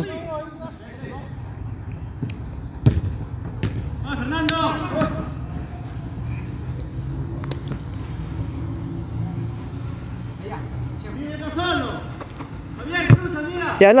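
Footballers shouting across an outdoor pitch, with a few sharp knocks of the ball being kicked, over a steady low hum.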